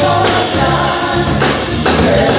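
Live band playing a song: several voices singing together over piano and drums, with a loud drum hit near the end.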